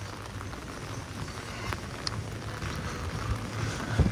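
Steady rain falling on wet paving, with a few single drops ticking close by.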